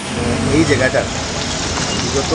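Street noise from road traffic, with engines and the voices of people close by. It starts abruptly.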